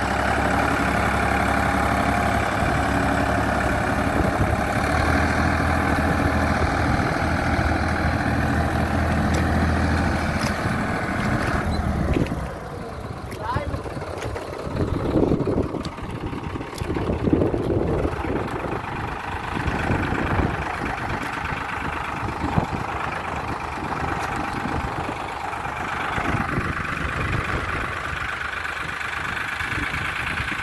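A farm tractor's diesel engine runs steadily at working revs while the tractor is stuck in deep paddy mud hitched to a leveller. About twelve seconds in, the engine note drops away and it runs more quietly and unevenly for the rest.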